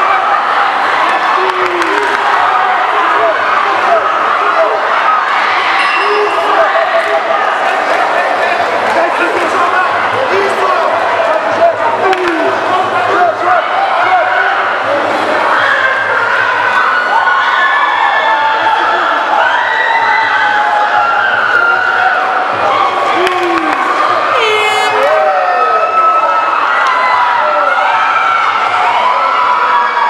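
Fight crowd of spectators shouting and cheering without a break, many voices overlapping, with single shouted voices standing out above the mass.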